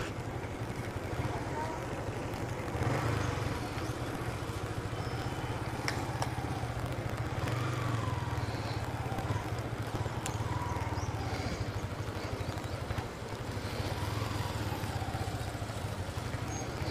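Motorcycle engine running at low speed with a steady low hum while the bike rolls slowly, with faint voices of people nearby.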